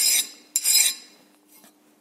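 Hand file skating across a hardened 80CrV2 steel hatchet head, two quick scraping strokes, the second about half a second in. The file glides over the steel without biting: the sign that the head is fully hardened after the quench.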